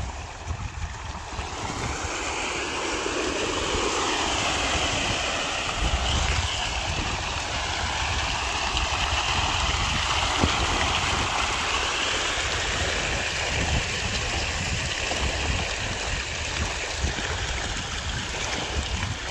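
A dense crowd of fish thrashing and splashing at the surface of a pond in a feeding frenzy, a steady churning of water that builds over the first couple of seconds and then holds.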